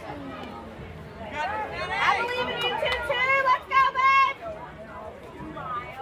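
Children's high-pitched voices shouting and calling out cheers, loudest in a burst of short held high calls about four seconds in, over background chatter from the crowd.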